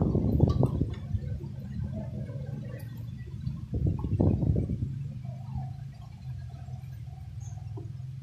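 Handling noise of an electric kettle's metal base plate being fitted back onto the kettle body: scraping and rattling in the first second and again about four seconds in, over a steady low hum.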